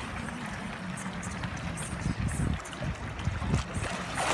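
Pool water sloshing and splashing around a swimmer, under an uneven low rumble of wind on the microphone.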